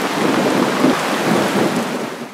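Heavy rain falling, heard as a loud, steady rush.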